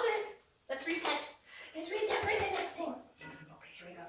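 A woman's voice in four short, lively bursts, calls or praise sounds that the recogniser did not take down as words.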